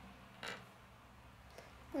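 Small plastic Lego pieces pressed together by hand, with one short click about half a second in as a part snaps on.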